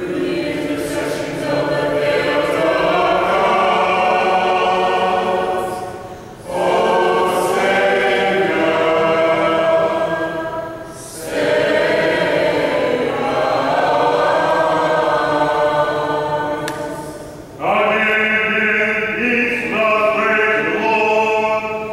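Mixed choir of men and women singing unaccompanied liturgical chant, in four long phrases separated by short pauses.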